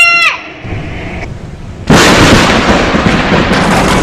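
A child's singing voice ends on a falling note. After a short lull, a sudden loud thunderclap breaks about two seconds in and carries on as a long rumble.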